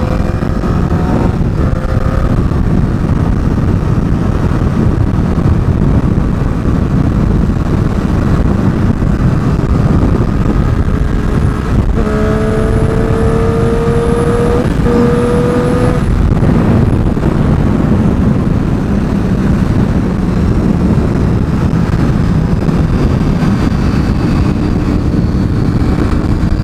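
Triumph Daytona 675's three-cylinder engine at highway cruising speed, mostly buried under a steady rush of wind on the microphone. About twelve seconds in, the engine note stands out clearly for a few seconds, rising slightly in pitch as the bike pulls.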